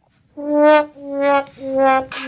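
Brass fanfare: after a moment's silence, three short, evenly spaced brass notes at the same pitch.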